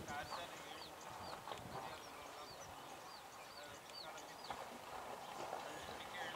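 A bird calling over and over outdoors: short, high, down-curving notes repeated about twice a second, with faint distant voices underneath.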